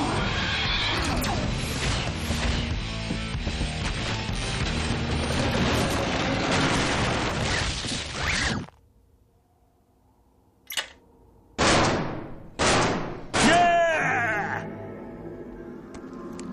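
Cartoon action soundtrack: loud dramatic music with crashing and smashing effects that cuts off suddenly about eight and a half seconds in. After a short silence come a click and three quick whooshes, the last trailing a falling ringing tone.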